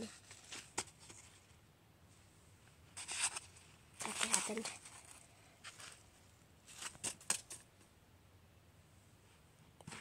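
A few short rustling and scraping noises, the longest about four seconds in, with quiet stretches between them: handling noise from a phone being moved around close to the floor.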